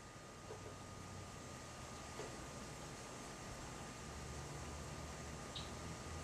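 Faint room tone: a steady hiss with a low hum and a thin steady whine, and a couple of faint ticks.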